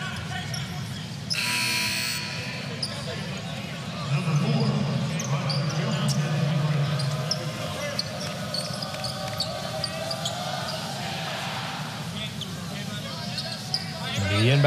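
Basketball arena ambience during a stoppage in play: crowd voices with scattered short sharp sounds from the court. There is a brief louder noisy burst about a second and a half in.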